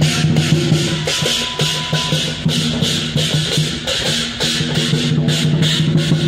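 Live Chinese dragon-dance percussion: a drum and clashing hand cymbals playing a fast, steady beat, with a low ringing tone sustained beneath the strikes.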